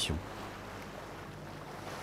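Steady wash of water and wind around a small sailing boat under way, an even low hiss with a faint steady low hum underneath.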